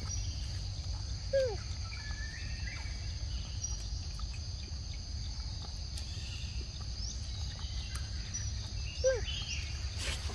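Forest ambience: insects calling steadily at a high pitch over a low rumble, with faint high chirps. Two short falling calls stand out, one about a second and a half in and one near the end.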